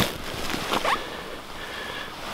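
Quiet rustling and handling noise as tip-up fishing line is drawn in hand over hand through an ice-fishing hole, starting with a light click.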